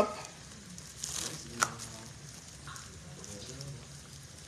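Quiet kitchen sounds: a faint sizzle of oil in a frying pan on the stove, with one sharp click about a second and a half in.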